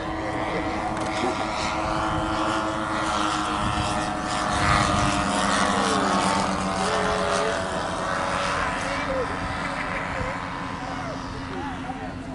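Three Zenoah 38 two-stroke petrol engines of a giant-scale radio-control model aircraft droning together in flight. The drone swells as the model passes closest around the middle and fades towards the end.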